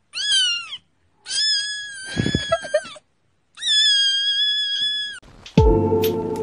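A kitten meowing in high-pitched cries: one short meow, then two long, drawn-out ones. Music starts near the end.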